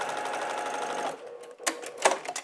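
Baby Lock Accomplish sewing machine stitching a diagonal seam at a steady speed, stopping about halfway through, followed by a couple of sharp clicks.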